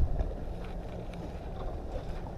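Wind on an action-camera microphone: a steady low rumble with a faint hiss above it.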